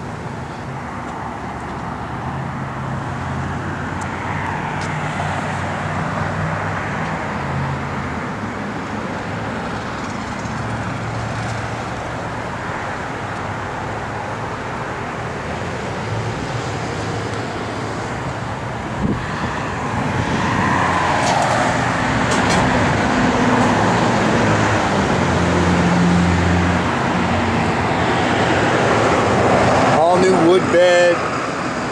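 Road traffic noise, with vehicles passing that swell and fade, growing louder in the second half, and a short knock about two-thirds of the way through.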